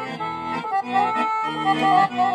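Roland digital accordion playing a hora in E minor: a quick right-hand melody over left-hand bass and chord pulses about twice a second.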